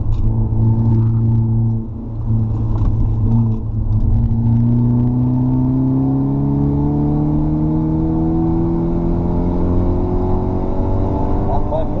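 Mercedes C250 Coupé engine heard from inside the cabin under hard acceleration on track. It dips briefly about two seconds in, then its note climbs slowly and steadily as it pulls through one long gear.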